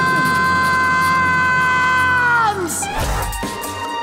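A long, high held note, either a cartoon cry or a musical note, that holds steady for about two and a half seconds and then sags in pitch and dies away. Cartoon music with a few sharp hits follows.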